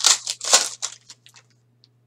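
A silver foil trading-card pack (2018 Contenders Optic Football) being torn open by hand. Several quick crinkling rips of the foil fall in the first second, then a few faint rustles die away.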